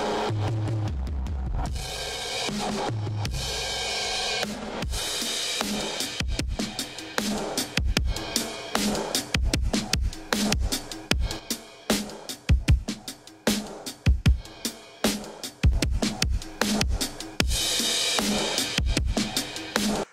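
A drum kit recording played through two stereo-linked Eventide Omnipressor 2830*Au compressors set to dynamic reversal (negative ratio), with very heavy gain reduction. It is dense and squashed with strong kick hits at first. From about five seconds in it turns into sharp, choppy hits with dips between them, then goes dense again before cutting off suddenly.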